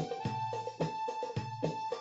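Background music played on a keyboard: a held high note with notes struck about every half second.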